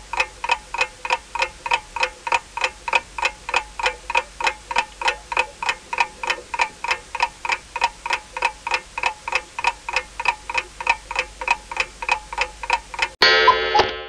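A clock-ticking sound effect, about three ticks a second, counting down the time given to sort the pictures. It stops about 13 s in and gives way to a short, loud bell-like ring that signals time is up.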